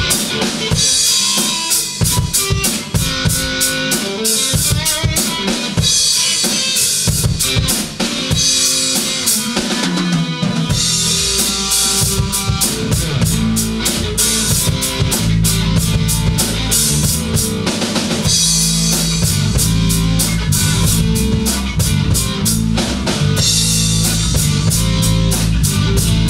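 A rock band jamming: a drum kit plays a steady beat with cymbal crashes every few seconds, and a bass guitar line comes in about ten seconds in.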